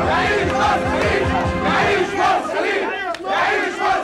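A crowd of voices shouting over one another at once in a heated uproar, dipping briefly near the end.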